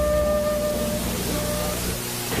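Soft background music holding a sustained chord over a low hum and faint hiss, slowly fading.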